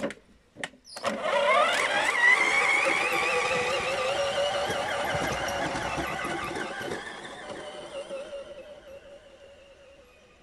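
Green Bosch cordless drill, rigged to drive a go-kart wheel, whining as its motor spins up with a quick rise in pitch about a second in, then running with a wavering pitch and fading as the kart moves away. A couple of sharp clicks come just before it starts.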